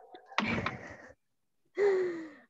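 A person's short breathy gasp about half a second in, lasting about half a second.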